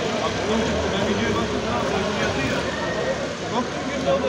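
Indistinct voices of people talking in the background, no clear words, over a steady low hum.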